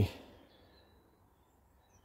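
Faint, high, thin bird chirps against a quiet background, one short call about half a second in and another near the end.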